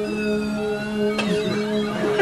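Synthesizer keyboard holding a sustained low chord, with thin high tones sliding slowly downward above it and a brief click a little after a second in.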